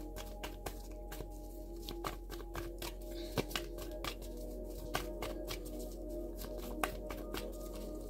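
A deck of tarot cards being shuffled by hand: a run of light, irregular card clicks and flicks. Under it, soft background music of steady held tones.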